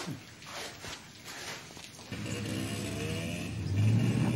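A motorcycle engine comes in about halfway through and runs steadily, growing louder near the end. Before it there are only faint scuffs and rustles.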